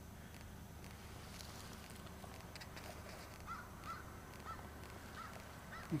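Faint outdoor background with a low steady rumble. From about halfway through, a bird gives a string of short calls, two or three a second.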